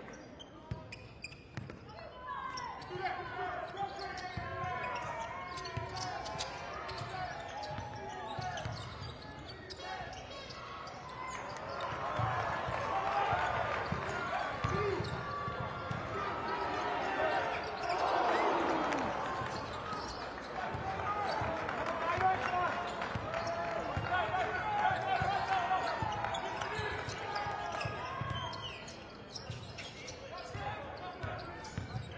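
A basketball being dribbled on a hardwood court in a large arena, with repeated low bounces, under voices and crowd noise that grow louder about twelve seconds in.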